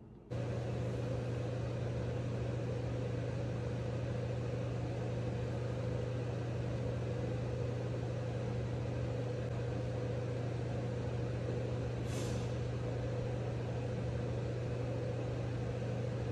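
A steady low mechanical hum with an even hiss over it, unchanging throughout, starting abruptly just after the start; a brief higher hiss comes about twelve seconds in.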